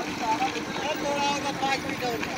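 Several people's voices calling out over a steady engine hum, with the general noise of a busy worksite.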